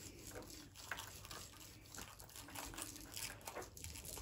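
Faint scattered crackling and small ticks of hands pressing and handling Playfoam beaded modelling foam and small plastic toy figures.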